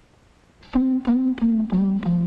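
After a brief near-silence, a voice hums four short notes, each a step lower in pitch than the last.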